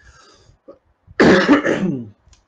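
A man gives one loud, rough, throat-clearing cough lasting under a second, just over a second in.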